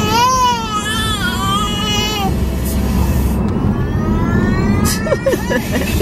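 Infant crying in a car seat: one loud wavering wail for about two seconds, then stopping, with a few short whimpers near the end. Steady road rumble of the moving car's cabin runs underneath, with a faint rising whine in the middle.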